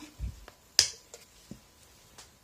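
Small plastic bottle of acrylic nail remover being handled: a soft low bump, then one sharp plastic click just under a second in, followed by a few faint ticks.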